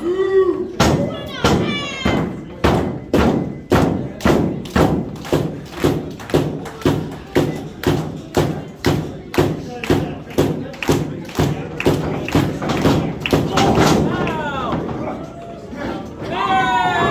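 A long, evenly paced run of thuds, about two and a half a second, starting about a second in and stopping about two seconds before the end. Shouting voices come briefly at the start and again near the end.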